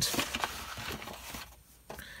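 Soft rustling and handling noise of a sheet of drawing paper being moved by hand, dying away about one and a half seconds in.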